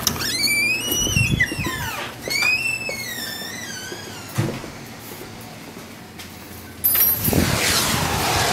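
A door's hinges squeal twice, each squeal long and wavering in pitch, followed by a click about four and a half seconds in. Near the end, steady rain noise comes in suddenly.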